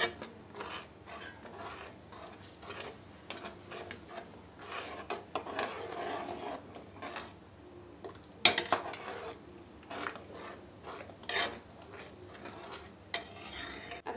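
Metal ladle stirring thick tamarind chutney in a metal kadhai, with irregular scrapes and clinks against the pan. The loudest knock comes about eight and a half seconds in.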